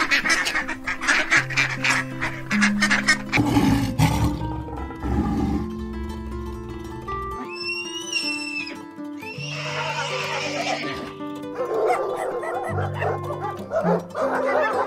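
Background music with animal calls laid over it. Quick sharp beats in the first few seconds; a horse whinnying about halfway through; a dog's calls near the end.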